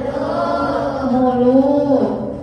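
A single voice singing, one long drawn-out note that slides slowly in pitch, then stops.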